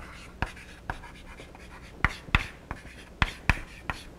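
Chalk writing on a blackboard: a string of irregular sharp taps and short scratchy strokes as letters are chalked onto the board.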